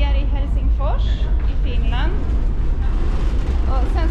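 High-pitched voices talking over a loud, steady deep rumble.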